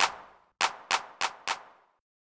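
Hand clap drum sample played in FL Studio while being panned with Fruity PanOMatic: five short, sharp claps, one at the start and then four about a third of a second apart.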